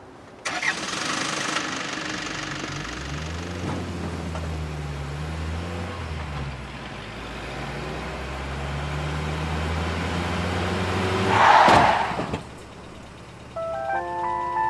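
An open-top jeep's engine starting and running, its pitch rising and falling as it is driven, with a loud, short burst of noise about eleven and a half seconds in.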